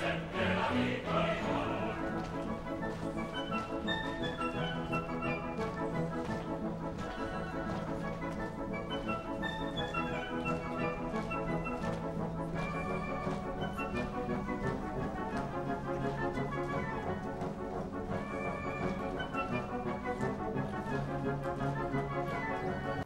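Opera performance music: orchestra with singing, a fuller choral sound in the first couple of seconds, then orchestral playing with repeated descending runs over a held low note.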